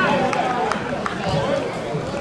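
People's voices calling out and talking across an outdoor football pitch, with no clear words.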